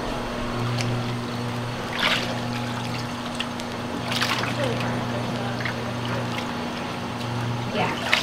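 Splashing and dripping as a plucked duck carcass is dipped into and lifted out of a tub of hot wax floating on water, to build up a wax coat on the feathers, with two sharper splashes about two and four seconds in. A low hum comes and goes underneath.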